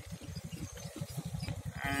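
A low rumble pulsing rapidly and evenly, with a man's voice starting near the end.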